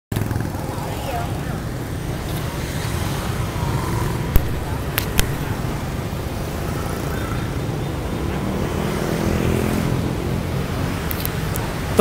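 Street traffic noise: a steady low rumble of passing vehicles, with two sharp clicks about four and five seconds in.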